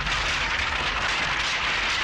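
Stack of bamboo poles collapsing, a steady clattering rattle of many poles falling together.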